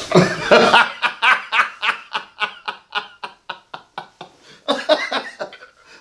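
Laughter: a long run of short chuckles, about four or five a second, slowing and fading over about five seconds.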